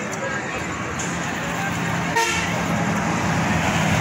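Street traffic noise: a motor vehicle's engine running steadily, with a short horn toot a little over two seconds in, and background voices.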